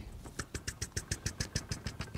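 Felt-tip marker dabbing a dotted line onto flipchart paper: a quick, even run of light taps, about nine a second, starting about half a second in.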